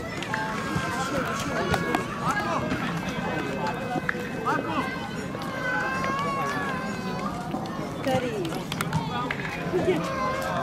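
Overlapping chatter of a group of men's voices, several people talking at once with no one voice standing out.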